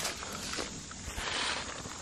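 Clear plastic minnow trap tossed on a rope and landing in shallow creek water with a light splash.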